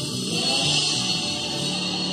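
A group of women singing gospel together into microphones, holding sustained notes, backed by a live church band.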